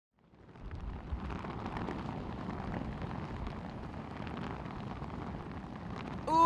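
Wind buffeting the microphone outdoors: a steady low rumble and rushing that fades in over the first second.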